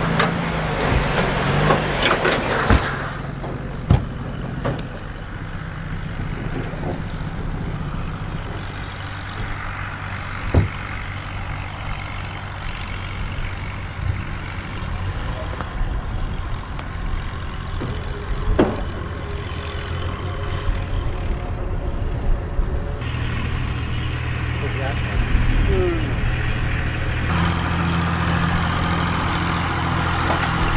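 A car engine idling steadily with a low hum, and a few sharp knocks now and then.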